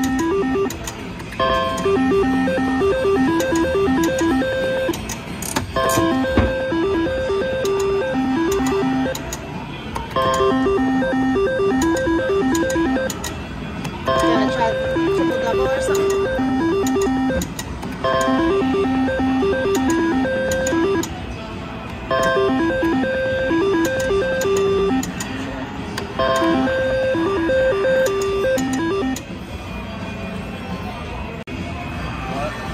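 IGT Double Gold three-reel slot machine spun again and again, about every four seconds: each spin plays a short electronic melody of stepped beeping tones while the reels turn, and each ends without a win. Casino-floor chatter and noise run underneath.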